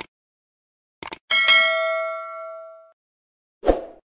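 Subscribe-button sound effects: a pair of quick mouse clicks about a second in, then a notification-bell ding that rings out and fades over about a second and a half. A short thump comes near the end.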